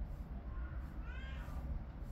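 A single short animal call about a second in, rising then falling in pitch, over a steady low hum.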